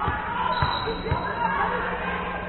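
Volleyballs thudding on a hardwood gym floor and off players' arms: three dull thumps within about a second, over players' voices.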